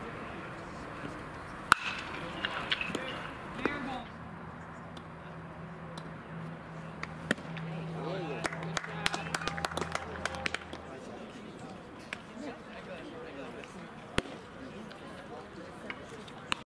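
A baseball's single sharp crack of impact about two seconds in, with a second, lighter snap near the end, over scattered voices of players and spectators at the ballpark. A low steady hum runs for several seconds in the middle.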